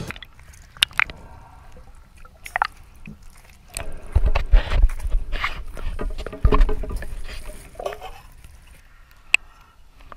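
Shallow water sloshing and splashing, with a few sharp clicks and knocks; the loudest splashy bursts come about four and six and a half seconds in.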